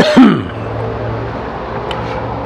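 A man coughs once, a short harsh burst with a brief falling vocal tail, right at the start. A steady low hum carries on underneath afterwards.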